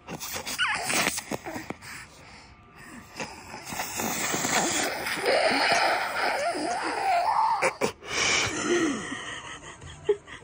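A mouth-suction nasal aspirator drawing mucus from a baby's nostril: a loud, rasping hiss of air sucked through the tube, strongest from about three to eight seconds in, with some wavering squeaky tones.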